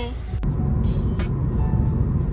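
Low road and engine rumble heard from inside a moving car's cabin, starting abruptly after a click about half a second in, with background music playing over it.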